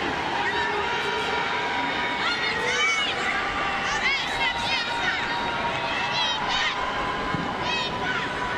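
Stadium crowd at a soccer match: a steady murmur with many high-pitched shouts and calls rising over it.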